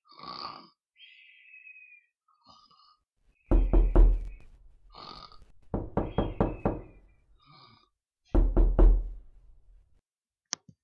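Heavy knocking in three bouts of three to five blows each, a couple of seconds apart, with short, faint high-pitched squeaks in between.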